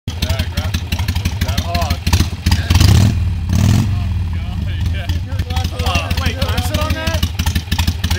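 Motorcycle engine running with a steady rapid low pulse, revved twice in quick succession about three seconds in, then settling back.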